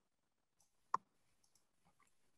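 A single short click about a second in, against near silence.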